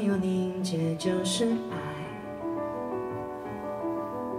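A live band playing the instrumental opening of a slow pop song: sustained keyboard chords with guitar and bass notes, and a few light cymbal touches in the first second or so.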